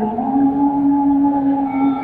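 A woman singing a Sindhi kalam into a microphone, sliding up into one long held note.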